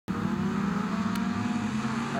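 Engines of a pack of autograss race cars running steadily on the dirt start grid before the race, with a slight rise in pitch.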